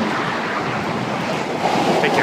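Steady rushing outdoor noise by a street, growing a little louder near the end.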